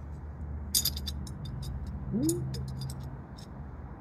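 Light metallic clicks and ticks of a Celestron T-adapter being twisted onto the threads of a T-ring on a DSLR, a quick irregular run of small clicks lasting a couple of seconds as the threads catch.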